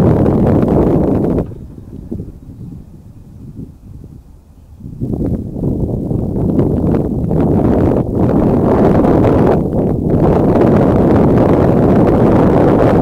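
Wind buffeting the microphone: a loud, low rumble that dies down about a second and a half in, then gusts back up about five seconds in.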